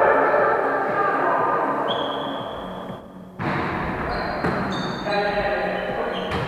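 A volleyball is struck hard about halfway through, one sharp hit that rings on in the echoing gym, with players' voices around it.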